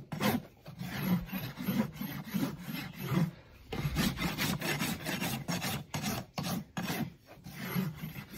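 Farrier's rasp filing the hoof wall of a large Shire cross horse in quick, even back-and-forth strokes, about two or three a second, with a short pause a little after three seconds in. The rasp is dressing off flare and rounding the bottom edge of the wall so it won't chip.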